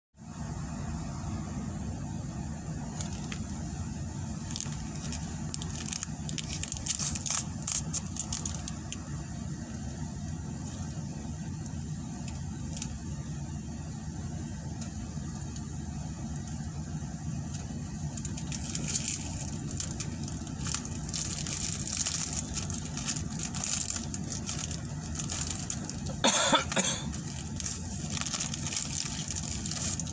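Steady low hum of a car engine idling, heard inside the cabin, with scattered small clicks and crackles from a plastic sushi pack being handled and food being eaten.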